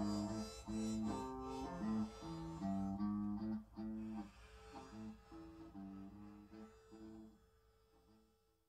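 Guitar music: a repeating figure of plucked notes, with a held note joining about halfway, fading out toward the end.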